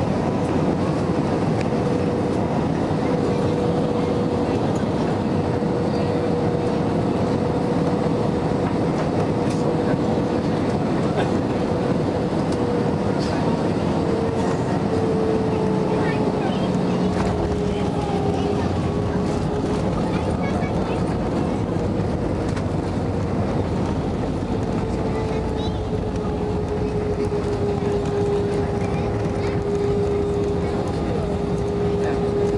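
Cabin noise of an Airbus A320 with CFM56 engines heard from a window seat over the wing on short final and landing: a steady rush of airflow and engine hum with a single tone sliding slightly lower in pitch. The aircraft touches down partway through, and the ground spoilers are deployed by the end.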